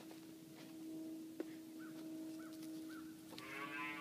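A black heifer calf begins to moo near the end, a low call that swells in loudness. Before it there is only faint background with a small click and a few faint short chirps.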